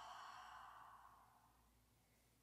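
A woman's soft, breathy exhale, like a sigh, fading away over about a second and a half.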